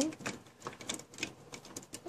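Faint, irregular clicks and light rustles of a packet of journal cards being handled and picked at by hand to open it.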